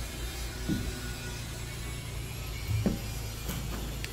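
A steady low hum with two brief bumps, about a second in and near three seconds in, as a person climbs down through a boat's deck hatch.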